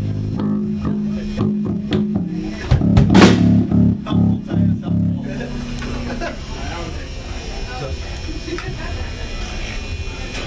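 Live rock band playing: electric bass holding low notes under drum hits, with a loud cymbal crash about three seconds in and a run of hits that ends the song about halfway through. After that, voices murmuring in the small room.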